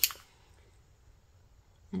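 Near silence: faint room tone between spoken words.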